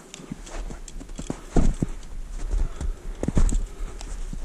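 Footsteps of a hiker walking on firm old snow and loose rock, crunching and scuffing in an uneven rhythm, with the heaviest steps about one and a half and three and a half seconds in.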